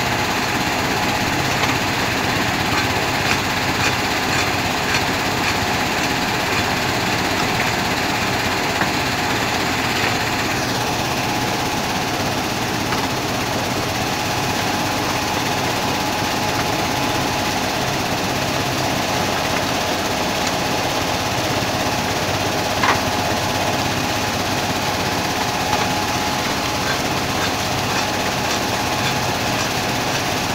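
Mobile sand washing plant running: the dewatering vibrating screen shaken by its two vibration motors, with belt conveyor and pump motors, making a loud, steady mechanical din with a constant hum. The high hiss eases slightly about ten seconds in.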